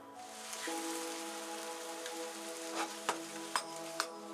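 Mushrooms sizzling in a frying pan over a gas burner, a steady hiss, with a few sharp clicks near the end.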